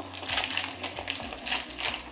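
Soft, irregular rustling with a few light clicks as a plush dog toy is handled and turned inside out.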